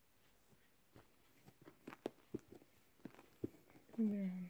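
Faint rustling and a few soft knocks as hands sort through small baby clothes in a clear plastic storage bin, scattered through the middle of the clip.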